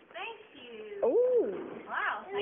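A person's drawn-out voice, one long pitched 'oooh'-like sound that rises, holds, and falls again in the second half, with a short higher cry near the end.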